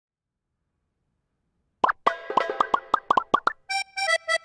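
Silence for about two seconds, then a quick run of short plopping notes that bend in pitch, leading near the end into the start of an electronic theme tune.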